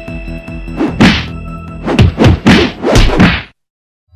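A string of heavy whacking blows, about six, coming faster toward the end, over background music, then everything cuts off suddenly.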